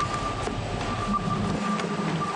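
Steady mechanical running noise with a thin, steady high whine held above it.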